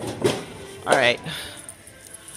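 A woman's voice saying a short word or two ("alright") over faint background music.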